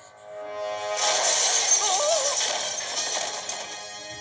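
Film-trailer soundtrack: music swells about a second in under a loud, crash-like rush of noise, with a wavering melody line over it, then eases off near the end.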